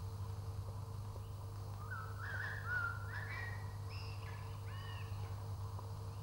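A bird sings one short phrase of quick chirping notes, starting about two seconds in and ending around five seconds, over a steady low hum.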